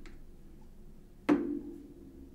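A single sharp knock of a hard object a little over a second in, with a short ringing tail.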